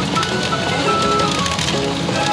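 PA Gin-Para Mugen Carnival pachinko machine playing its jingly Hibiscus-mode music, a bright melody of held notes, over a constant clatter of steel pachinko balls.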